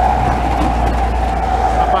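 Steady motorway traffic noise, a continuous rumble of vehicles passing on the toll road.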